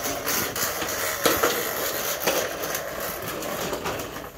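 Plastic toy push lawn mower rattling and clattering as a toddler pushes it over foam mats and concrete, with a few louder knocks.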